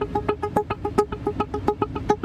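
Background score: a fast staccato figure of short pitched notes, repeated about eight times a second on the same few pitches.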